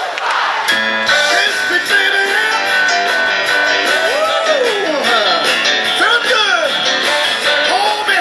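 Live band music with guitar, the instruments coming in about a second in after a brief noisy stretch, with pitches gliding up and down over the chords.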